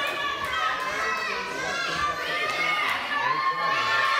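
Children shouting and cheering from the sidelines of a children's judo match, many high voices overlapping, with crowd noise in a large hall.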